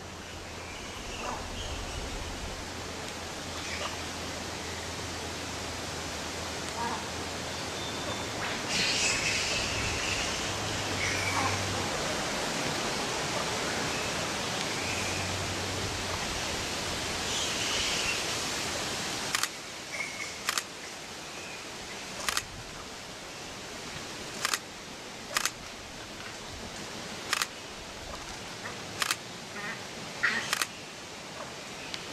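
A steady hiss of outdoor noise, then, from about two-thirds of the way through, a series of sharp camera clicks, one every second or two.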